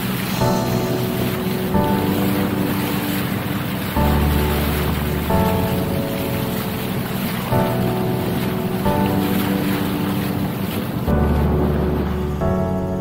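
Steady rush of wind and water from a bangka boat under way, with wind buffeting the microphone, under background music whose notes change every second or two.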